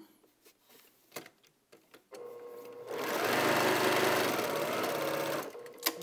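Domestic electric sewing machine stitching a seam. It starts softly about two seconds in, runs at speed for about two and a half seconds, and stops shortly before the end. A few soft clicks of fabric handling come before it.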